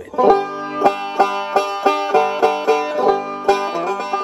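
Five-string banjo picked with fingerpicks: a run of bright, ringing plucked notes, about three strong notes a second.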